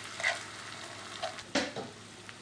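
Chopped onion, garlic and tomato sizzling in olive oil in a skillet while being stirred with a slotted spatula, with two strokes of the spatula against the pan, the louder one just past the middle.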